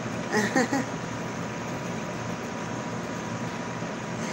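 A brief vocal sound from the woman about half a second in, then steady background hiss with a faint steady hum, the room and microphone noise of a webcam stream.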